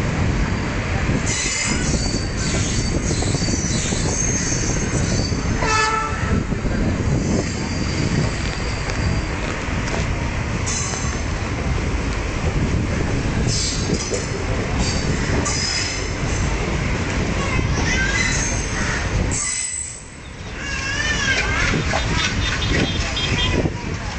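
Passenger train running, heard from on board through an open window: a steady rumble of wheels on the rails, with high-pitched wheel squeals that come and go.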